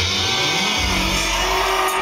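Live electronic music over a concert PA. A low synth tone sweeps upward in pitch over the first second with heavy bass under it. The bass then drops out and a high held synth tone comes in near the end.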